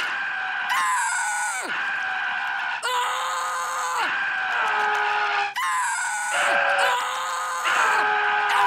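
A cartoon mouthworm screaming: a string of long, high cries one after another with short breaks, some ending in a falling pitch.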